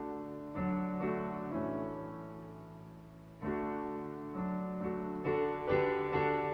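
Digital piano playing a slow hymn tune in full chords. New chords come about once a second, with one longer held chord that fades away before the next is struck, about three and a half seconds in.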